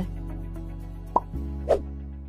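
Quiz background music with a steady low bass, slowly fading. A little past halfway, two short rising pop sound effects come about half a second apart.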